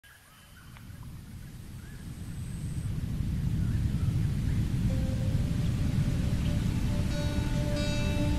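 Low, steady rush of a waterfall, fading in from near silence over the first few seconds. About five seconds in, a held music note joins it, and more sustained notes layer on near the end.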